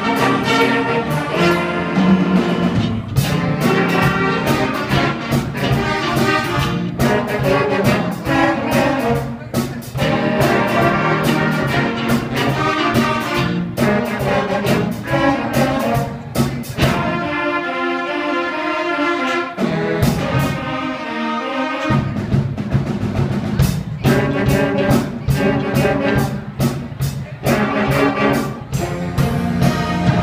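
Middle-school jazz band playing live: saxophones and other horns over drum kit and bass. About halfway through, the bass and drums drop out for a few seconds and the horns play alone, then the full band comes back in.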